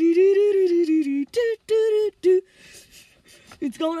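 One voice singing unaccompanied, a long held note and then a few short ones on wordless syllables. It breaks off about two and a half seconds in and starts again just before the end.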